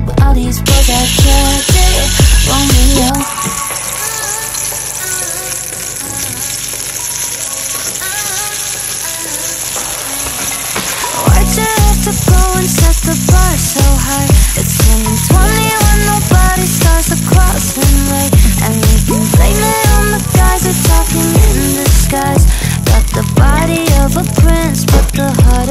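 A song with a steady beat, whose beat drops out from about three to eleven seconds in and then returns. Under it, a steady sizzle of asparagus frying in a pan.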